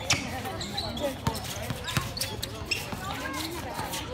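Basketball game play: a ball bouncing on a hard court in sharp, uneven knocks, with players' and onlookers' voices calling out over it.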